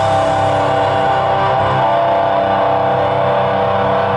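Live heavy metal band: distorted electric guitars and bass let one chord ring out, held steady, with no drumming under it.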